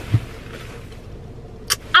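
Steady low rumble of a car heard from inside the cabin, with a soft thump just after the start.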